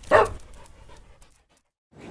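A single dog bark used as a logo sound effect. It is sharp, falls in pitch and fades away within about a second.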